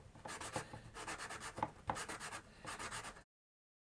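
Small miniature dish being sanded by hand: a run of short, scratchy rubbing strokes. The sound cuts off abruptly about three seconds in.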